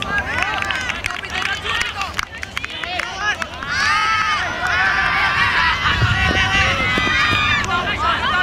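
Several players' voices shouting and calling out across the field during an ultimate frisbee point, overlapping one another. The calls grow louder and more numerous about halfway through, as the disc is in the air.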